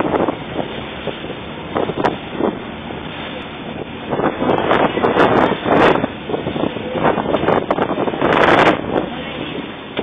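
A small motorboat under way at speed: water rushing and foaming along the hull with wind buffeting the microphone, in loud gusts through the second half.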